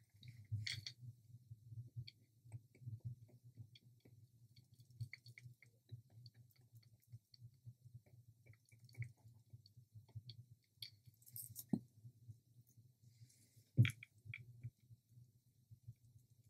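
Faint, scattered small clicks and sticky taps of a plastic applicator and cup being handled while epoxy resin is dabbed onto small wooden pieces, over a low steady hum; two sharper clicks come late on.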